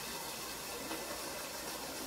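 Steady faint hiss of buffalo chicken dip heating in a slow cooker crock, stirred with a silicone spatula.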